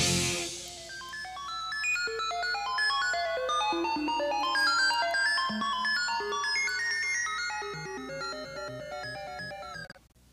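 Rock band's closing chord and cymbal die away in the first half second, leaving a solo synthesizer playing a long run of short, bright, bleeping notes that jump up and down in pitch. The sound cuts off suddenly at the end.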